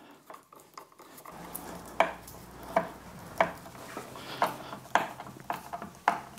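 Screwdriver turning bolts down into a plastic top-box mounting plate: a string of sharp, irregular metallic clicks, about one every half second to second.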